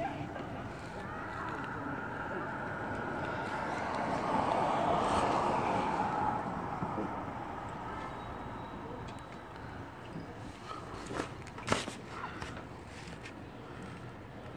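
City street noise heard from above, with a vehicle passing that swells over a few seconds and fades away. Near the end come a couple of sharp clicks.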